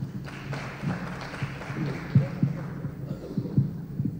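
A handheld microphone being handled as it is passed on, giving a few soft, low knocks over faint, even room noise.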